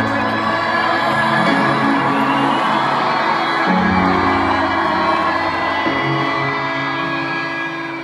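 Live ballad music in an arena: slow, sustained low chords that change about four seconds in, under steady crowd cheering and whoops.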